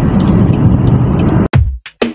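Steady road and engine noise inside a moving car for about a second and a half. It then cuts off suddenly into electronic music with a heavy beat of about two strikes a second.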